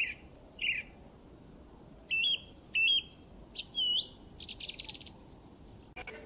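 Bird calls: a series of short separate chirps, several with sudden pitch jumps, then a rapid buzzy trill and a run of thin, very high notes near the end.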